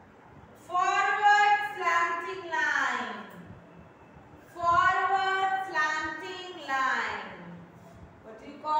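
A high voice chanting two long, drawn-out sing-song phrases, each sliding down in pitch at its end.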